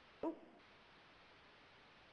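A woman's short "oh", then near silence with a faint steady hiss.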